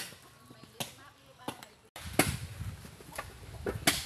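Sharp chopping knocks, spaced about a second apart. The sound cuts off abruptly about two seconds in, and after the cut come louder strikes over a low rumble.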